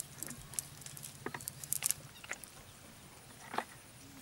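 A wet fishing net and the weed caught in it being handled and picked through by hand: irregular soft crackles and rustles, with a few sharper clicks.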